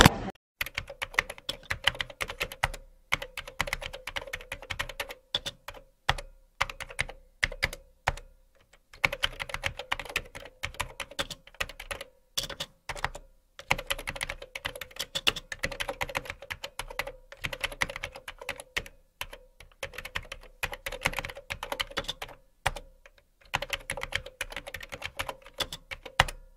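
Computer keyboard typing sound effect: quick, uneven runs of key clicks broken by short pauses every few seconds, laid over text being typed out on screen. A faint steady tone runs underneath.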